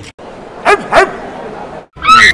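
A dog barking twice in quick succession, the barks about a third of a second apart.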